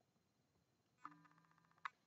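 Near silence, broken by two faint clicks under a second apart, the first about a second in, with a faint hum between them, from the clear plastic case of a boxed action figure being handled.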